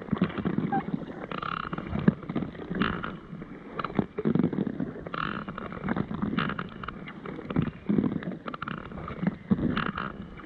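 Double-bladed carbon-shaft paddle stroking through calm water beside a packraft, alternating sides about once every second and a half, each stroke a swirl and splash of water.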